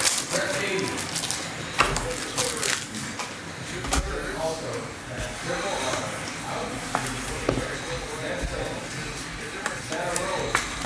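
Scattered sharp clicks and taps of clear plastic card toploaders and trading cards being handled on a table, over background music and voices.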